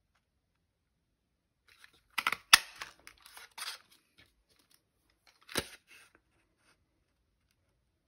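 Handheld strawberry-shape craft punch cutting card: two sharp snaps about three seconds apart, the first and louder one amid the rustle and scrape of the card strip being slid and pressed in the punch.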